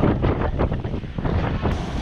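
Wind buffeting a GoPro's microphone: an uneven low rumble.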